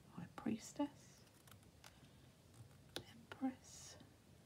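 Tarot cards being handled and laid one on another on a cloth: a few soft taps, and a brief slide of card over card near the end. A few quiet murmured words come between them.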